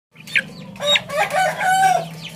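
A young Shamo cross Mangon cockerel, five months old and still learning to crow, giving a short, uneven crow: a brief high squeak, then a few broken notes ending in one held note.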